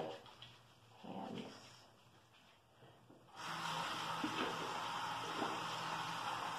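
A tap is turned on and water runs steadily into a sink, starting about halfway through, for hand washing. A brief voice-like sound comes about a second in.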